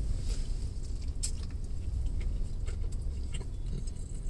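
Faint chewing, with a few small clicks and rustles from handling a taco and its food container, over a steady low hum inside a car's cabin.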